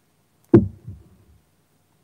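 A heavy glazed ceramic dish set down on a tabletop: one dull knock about half a second in, then a lighter knock just after.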